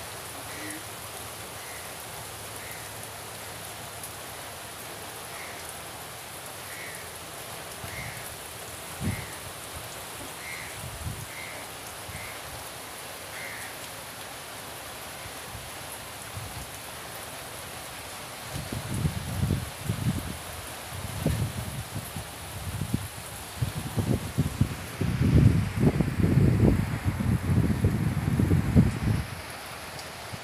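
Steady hiss of rain. In the first half, about a dozen short high chirps from a small bird; from about two-thirds in, loud low rumbling bursts on the microphone.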